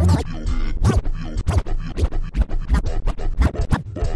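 Turntable scratching over a slowed-down, screwed hip hop beat. The scratches are short back-and-forth record strokes that come quicker and closer together in the second half.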